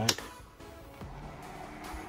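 A click of the rear power switch on an Xbox Series X replica mini fridge, then about a second later its cooling fan starts and runs with a steady, loud hum.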